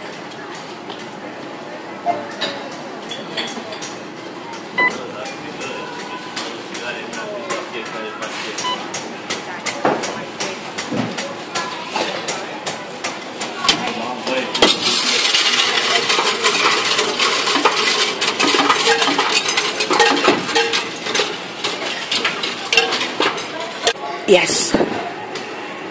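Coinstar coin-counting machine taking in and counting a batch of 50p coins: rapid metallic clinking and rattling that starts about a third of the way in and grows denser and louder about halfway through.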